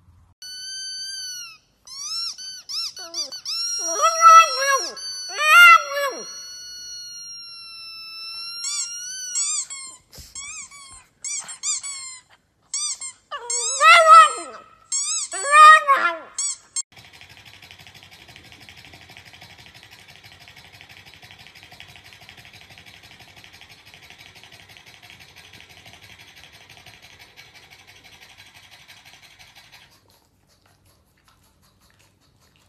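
A pug whining and yowling in high-pitched gliding cries, loudest in two spells around four to six seconds and thirteen to sixteen seconds in. The cries stop at about seventeen seconds and a faint steady hiss follows.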